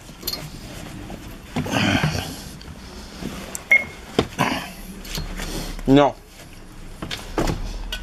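Footsteps and scuffing on a bus's aluminium treadplate entry steps, with a few sharp knocks and a rustle. A short vocal sound comes about six seconds in.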